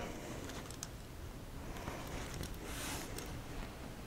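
Faint rasping of a small rotary cutter's blade working through layers of quilted fabric and batting, with a brief, slightly louder rasp about three seconds in.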